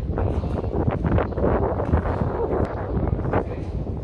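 Wind buffeting the phone's microphone, a loud, uneven low rumble, with scattered faint clicks and knocks from handling over it.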